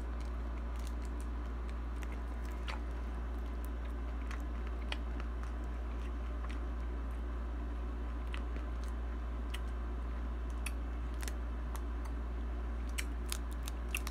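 A person chewing and biting an ice cream bar: scattered faint clicks and mouth noises over a steady low hum.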